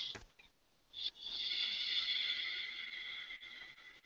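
Faint hiss with a thin, steady high whine over a video-call audio line, starting about a second in and fading out after about two and a half seconds.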